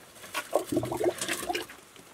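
Water sloshing and dripping as a submersible sump pump is handled and set down in a plastic bucket holding a little water, with a few light knocks, about half a second to a second and a half in.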